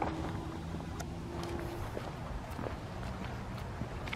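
Footsteps on stone pavers, a few irregular taps and scuffs, over a steady low background rumble.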